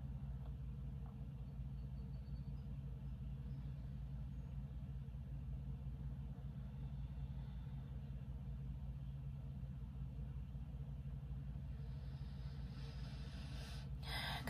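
Steady low background hum with no other activity, typical of room tone. A soft breath comes near the end.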